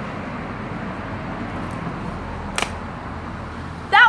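Wind rushing steadily over the microphone, with one sharp smack about two and a half seconds in from a wooden color guard rifle being tossed and caught.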